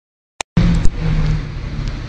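A car engine running at low revs with a steady low note, heard from inside a car. A click comes just before it starts, and two more sharp clicks follow just after it begins.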